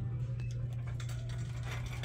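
Store room tone: a steady low hum with a few faint clicks and rustles.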